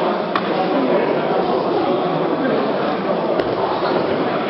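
Indistinct chatter of many people talking at once in a large hall, with two brief, sharp clicks about three seconds apart.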